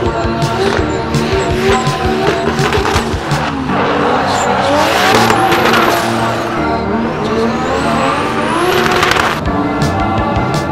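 Background music with a steady beat, mixed with drift cars' engines revving and tyres squealing. From about four seconds in, a rising hiss builds and then cuts off sharply near the end.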